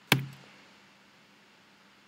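A single sharp click of a laptop key being pressed to advance the slide, with a brief ring-out.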